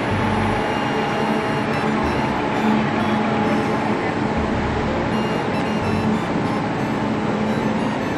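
Steady hum of high-speed electric trainsets standing at a station platform, their on-board equipment running, with a few constant tones.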